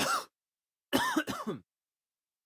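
Short wordless vocal noises from a person: one brief sound at the start, then three quick ones in a row about a second in, with dead silence between.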